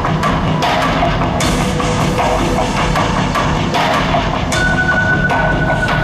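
Rock band playing live through a concert PA, an instrumental passage without vocals: a steady drum beat over a low, dense backing, with a held high tone coming in about four and a half seconds in.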